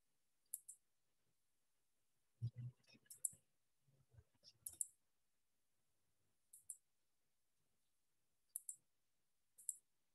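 Near silence broken by short, sharp clicks that come in quick pairs, six times. Faint low muffled sounds come between them a few seconds in.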